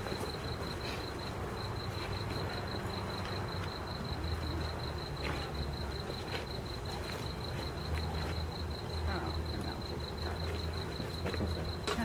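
Crickets chirping in a steady, high, pulsing trill, with a few scattered knocks of sparring weapons striking shield and armour.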